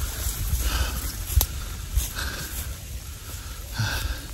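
A man breathing and sniffing close to a clip-on microphone, over an irregular low rumble of wind on the mic, with one sharp click about one and a half seconds in.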